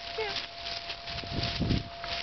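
Cimarron Uruguayo puppy giving one short, falling whine just after the start. Low rumbling noise follows in the second second.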